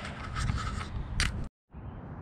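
Rustling and scraping handling noise from a moving handheld camera, with a sharper scrape about a second in. The sound cuts out abruptly for a moment at an edit, then fainter outdoor background noise follows.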